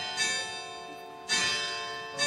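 Church bell ringing: two strokes about a second apart, each ringing on and fading.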